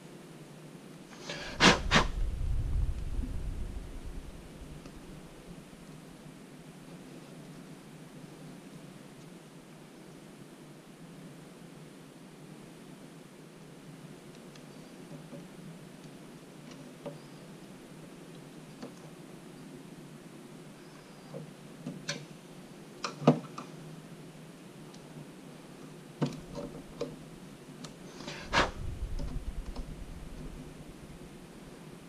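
Sharp metal clicks and knocks from a key being turned over and clamped in the vise of a DEFU 368A vertical key cutting machine, scattered through the second half. There are heavier thumps with a low rumble about two seconds in and again near the end.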